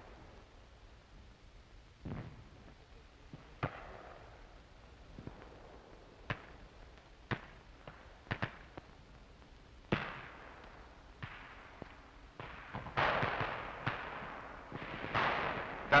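Scattered battlefield gunfire and shell bursts on an old film soundtrack: single sharp shots every second or two, then a few longer, rumbling bursts toward the end.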